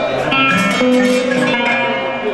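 Band music played over a sound system, led by a plucked guitar line over a stepping bass line.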